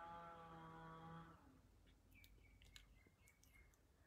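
Near silence: faint room tone with a faint steady hum that fades out about a second and a half in, then a few faint clicks.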